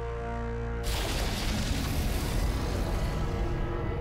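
Dramatic film score holding sustained low tones, then about a second in a sudden loud rushing blast with a deep rumble that carries on to near the end: a TV sound effect of a fiery energy entity breaking free of its containment.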